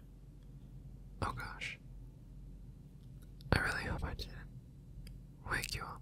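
A man whispering close to the microphone in three short breathy bursts, the words not made out.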